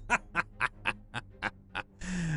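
A man's drawn-out villain's laugh, an even run of short 'ha' pulses at about four a second, trailing off slightly toward the end.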